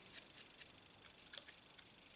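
Faint, scattered small clicks and light rustles of paper pieces being handled and pressed onto a card, the strongest about a second and a half in.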